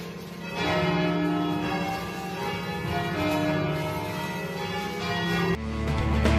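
Church bells rung by hand with ropes in a traditional Trentino scampanio, several bells ringing together and swelling again every second or so. Music cuts in sharply near the end.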